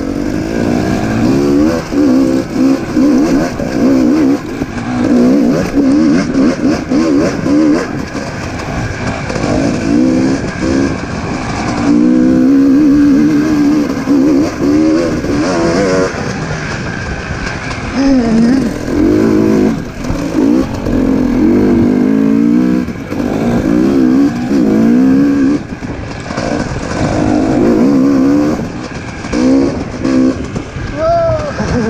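Dirt bike engine under constant throttle changes, its pitch rising and falling every second or two, with a steadier stretch about halfway through.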